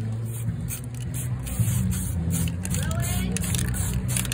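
Aerosol spray paint can hissing in short bursts, over the low, steady hum of a vehicle engine running.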